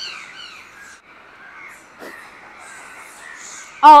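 Faint, scattered high-pitched animal calls, several of them falling in pitch.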